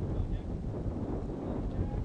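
Wind rumbling on an outdoor microphone, with faint distant voices now and then.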